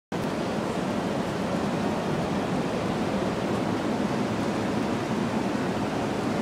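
Steady rush of a nearby waterfall, an even hiss of falling water that holds at one level without swelling.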